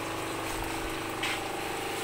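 Water pump of an aquaponics system running with a steady hum, while water pours from a tap outlet into a tank.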